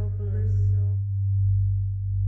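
A steady low sine tone, swelling and fading in loudness about once a second, under a sustained musical pad that fades out about halfway through.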